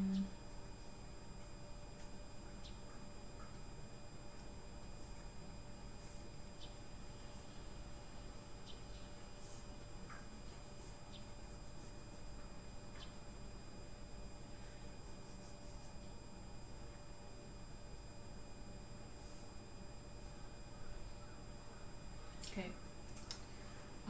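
Steady low electrical hum with faint high steady whine tones, the noise floor of a computer recording setup, with a scattering of faint light clicks. A short low tone sounds right at the start.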